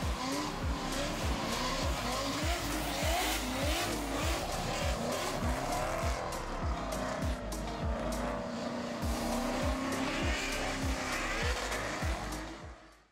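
Drift cars revving hard, their engine notes rising and falling with tire squeal, over music with a steady beat of about two thumps a second.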